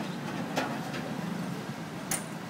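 Engine of a pickup truck running steadily as it pulls away, its hum fading slightly, with a brief sharp click about half a second in.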